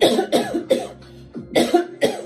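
A woman coughing in a fit: several coughs in quick succession, then another about a second and a half in.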